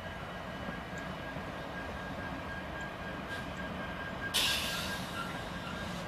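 Freight train of boxcars rolling past, a steady rumble of wheels on rail with a thin, steady high ringing tone over it. About four seconds in, a louder hiss comes up suddenly and then fades.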